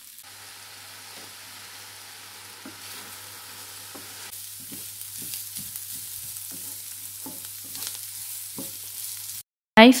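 Diced vegetables (potato and onion, then beetroot) sizzling as they fry in a nonstick pan while a spatula stirs them. The sizzle is steady, and in the second half there are scattered short taps of the spatula against the pan. It cuts off shortly before the end.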